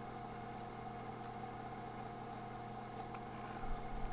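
Faint, steady low hum: a buzz made of several even, unchanging tones, with no distinct events over it.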